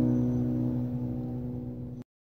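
Background music: a strummed acoustic guitar chord ringing on and slowly fading away.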